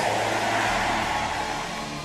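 A hall full of worshippers giving a slowly fading murmur of response, over soft sustained keyboard chords that come through more clearly near the end.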